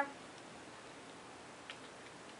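Quiet room noise with one faint click near the end, from a fingertip and nail on a plastic eyeshadow compact as it is handled for a swatch.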